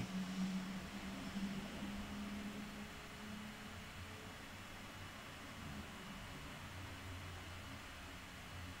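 Faint, steady background hiss with a low hum: room tone, with no distinct sound events.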